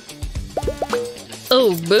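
Background music with a quick run of four short rising 'bloop' sound effects about half a second in and a brief held tone just after, then a short spoken 'oh' near the end.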